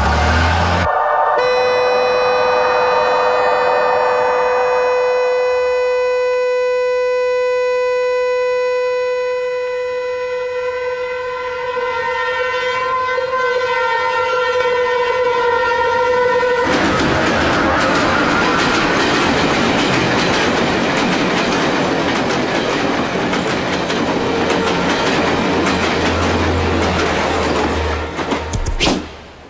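A train horn sounds one long steady note for about fifteen seconds. It then gives way to the loud rushing clatter of a train passing close by.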